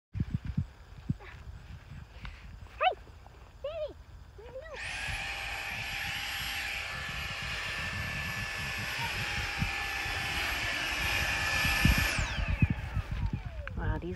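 Dyson handheld vacuum cleaner switched on about five seconds in, running steadily with a high whine, then switched off near the end and winding down with a falling whine.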